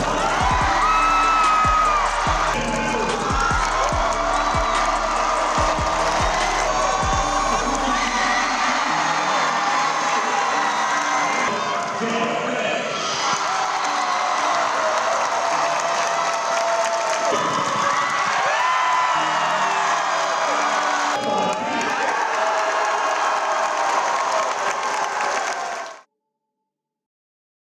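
An arena crowd cheering and shouting over music, with voices mixed in. Everything cuts off suddenly at the end.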